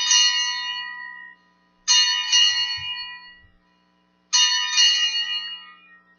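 Altar bell rung three times at the elevation of the chalice, one strike about every two seconds. Each ring is bright and dies away over about a second and a half.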